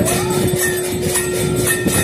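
A long, steady horn-like tone held at one pitch, which dips and stops just before the end, over fast rhythmic jingling and percussion.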